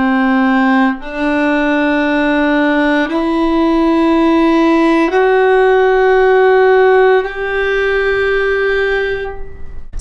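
Solo violin slowly bowing a G major scale upward, one sustained note about every two seconds, from C through open D, E and F sharp to the top G. The top G is held and fades out near the end.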